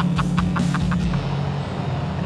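Background music with a quick beat of about four hits a second, over the steady low drone of a 1968 Camaro's GM Performance ZZ502 big-block V8 cruising.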